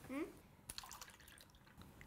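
Faint clicks and a little dripping of water as a plastic cup of water is picked up and handled.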